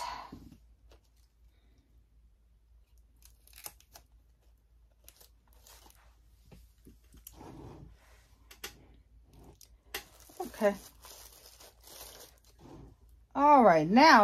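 Paper filler and tissue paper handled in a gift mug: scattered soft rustles and crinkles, with a few sharper clicks as items are set in place.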